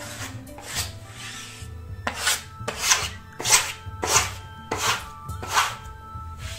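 Hand rubbing across newly hung wallpaper, smoothing it onto the wall: one faint stroke about a second in, then about six louder sweeps roughly every 0.6 s. Faint background music plays underneath.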